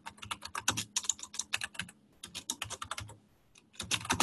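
Computer keyboard typing in quick runs of keystrokes, with a short pause near the end before a few more keys.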